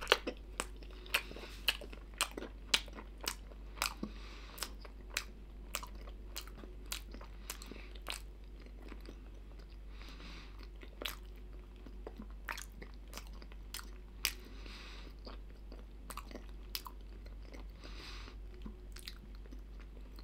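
A toothless mouth chewing a soft microwaved minced-meat and barley snack pocket: wet smacking clicks about twice a second, thinning after about eight seconds to occasional smacks.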